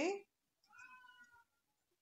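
A domestic cat meowing: one faint call under a second long, a little past the start, a demanding meow for attention.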